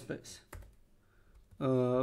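A few computer keyboard keystrokes as a short word is typed. A man's voice is heard briefly at the start and again near the end, drawing out a word.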